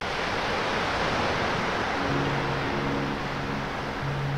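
Ocean surf, a steady wash of breaking waves, with a low sustained musical tone joining about two seconds in.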